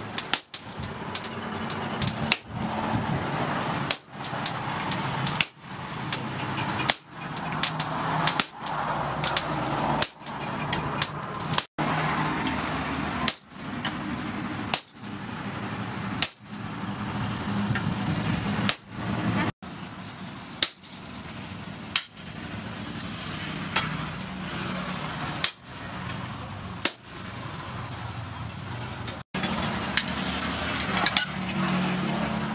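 Hand hammer forging a red-hot piece of tractor disc plough steel held in tongs on an anvil: sharp metallic blows at an irregular pace, some ringing briefly, over a steady background noise.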